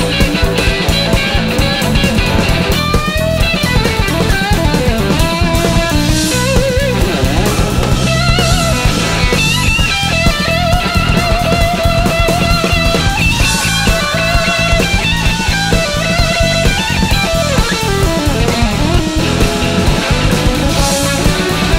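Live rock band playing an instrumental section: an electric guitar solo with bending, sliding notes over bass and drums.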